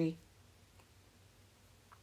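The last syllable of a spoken word, then near silence: room tone.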